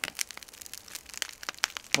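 Large wood bonfire crackling, with many irregular sharp pops.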